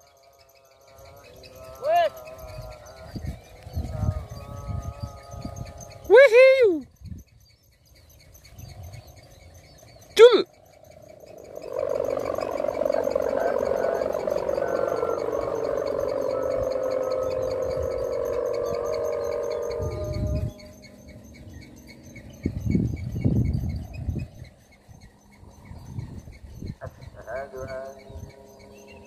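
Mica-film kite hummer (sendaren) on a big flying kite, buzzing in the wind. Its reedy drone swells up about twelve seconds in, holds for about eight seconds while slowly sinking in pitch, then drops away suddenly.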